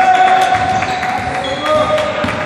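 A basketball being dribbled on a hardwood court, the bounces echoing around a large gym, with players' voices calling over it.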